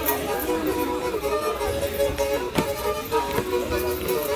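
Black Sea kemençe playing a horon dance tune, a steady bowed melody.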